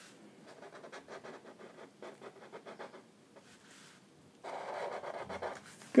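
Felt-tip markers scratching across paper as lines are drawn. A quick run of short strokes comes first, then a pause. About four and a half seconds in, a longer and louder stroke lasts roughly a second.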